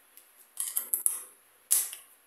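Light metallic clicks of a DeWalt DT7603 double-ended bit holder being handled: its reversible end is pulled out, flipped and snapped back in. There are several small clicks, then a louder snap near the end.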